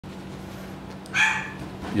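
A single short, high-pitched animal cry about a second in, lasting about a third of a second, over a steady low electrical hum.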